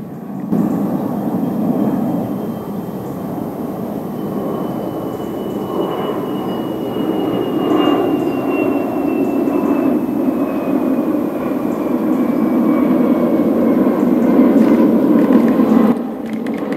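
Jet airliner flying overhead: a steady engine roar that grows louder toward the end, with a high whine sliding slowly down in pitch through the middle.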